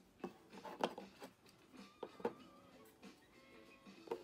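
Clear plastic card display stands being handled and set down on a shelf: about five light clicks and knocks in the first two and a half seconds.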